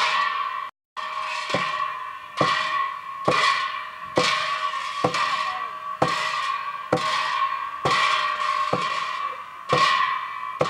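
Large pair of hand cymbals clashed at a steady pace, about once every 0.9 s, each clash ringing on into the next. The sound drops out briefly near the start.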